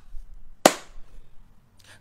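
A single sharp smack, like a clap or a hand striking something, about two-thirds of a second in, with a short ringing tail.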